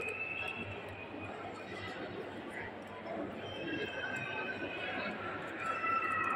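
Indistinct background voices of people talking, over the steady noise of a busy public space.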